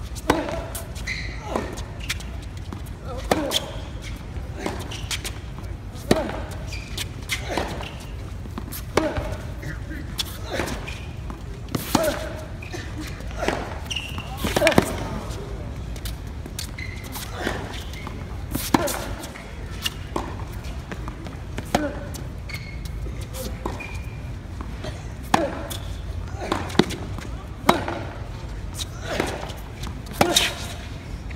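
Tennis ball being struck by racquets and bouncing on a hard court in a baseline rally: a run of sharp pops about every second or two.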